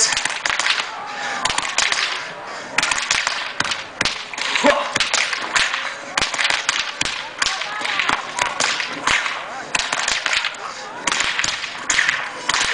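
Two whips cracked one after the other in quick, rhythmic runs: many sharp cracks, several a second, with short breaks between the runs.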